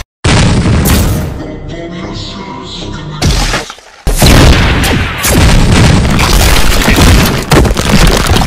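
Animation soundtrack: loud booming sound effects over music. It cuts out briefly right at the start, eases off for a stretch, dips once more just before the middle, then stays loud to the end.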